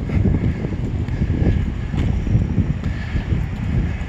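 Wind buffeting the microphone: a steady, fluttering low rumble.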